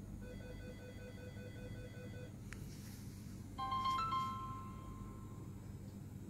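Samsung Galaxy J7 Prime's startup chime about three and a half seconds in: a short, bright melody that rings out for nearly two seconds as the phone boots. Before it, a run of short beeps, about four a second, for two seconds, and a single click.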